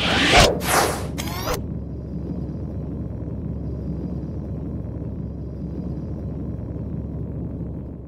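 Edited whoosh sound effects sweeping through the first second and a half, followed by a steady low rumbling drone.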